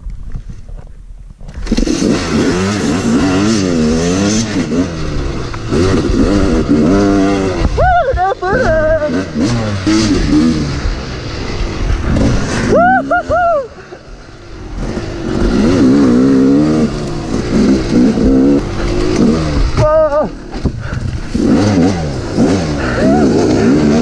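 Yamaha YZ250 two-stroke dirt bike engines launching from a standing start about a second and a half in, then revving hard, the pitch climbing and dropping over and over with throttle and gear changes. A second bike runs close ahead.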